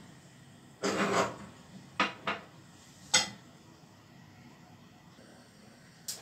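Small glass bowls being handled and set down on a gas stovetop: a short rustling rush about a second in, then three sharp clinks and knocks over the next two seconds.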